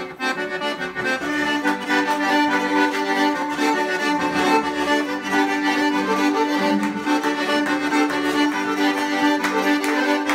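Organetto (diatonic button accordion) and lira calabrese (bowed Calabrian fiddle) playing a tarantella together over a steady held drone note.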